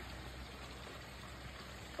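Faint, steady outdoor background noise with a low hum underneath; no distinct sound stands out.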